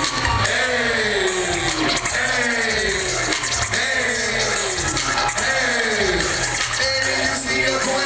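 A hip hop beat played loud over a club PA system at a live show, with a sliding note that falls about once a second over a steady bass drum. No rapping is heard over it.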